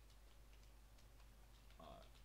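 Faint computer keyboard typing: a few soft, scattered key clicks over a low steady room hum.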